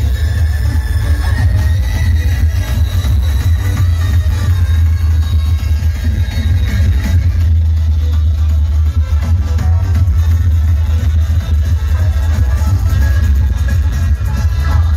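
Loud electronic dance music played over an outdoor DJ sound system, with heavy, continuous bass.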